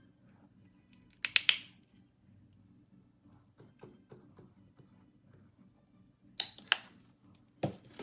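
A few sharp clicks in quick succession about a second in, and again near the end, over a faint steady low hum.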